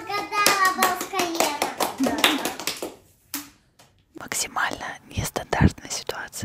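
A little girl talking excitedly, then, after a brief pause, a woman whispering close to a microphone.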